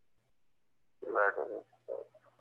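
Near silence with a faint low hum, then about a second in a short wordless voiced murmur from a person, with a second brief one near the end.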